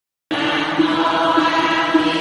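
Recorded Buddhist chanting: steady, sustained voices on a low held pitch. The track cuts out at the start and picks up again about a third of a second in.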